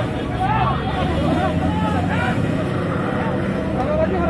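Several people's voices talking and calling out over the steady running of a vehicle engine.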